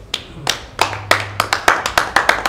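Hand claps, spaced apart at first and coming faster and closer together toward the end.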